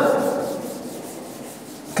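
Chalkboard duster rubbing across a blackboard as it is wiped clean, an even scratchy scrubbing that grows fainter toward the end.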